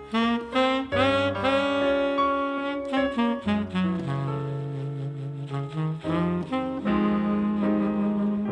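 Tenor saxophone playing a jazz ballad melody, a run of short notes and longer held ones, over a double bass line.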